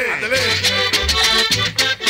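Cumbia with accordion played loud over a sonidero sound system: a stepping bass line under rhythmic scraped percussion and the accordion melody.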